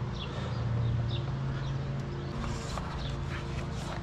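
A plastic engine oil filler cap being twisted and lifted off by a gloved hand, with a few light clicks of handling, over a steady low hum.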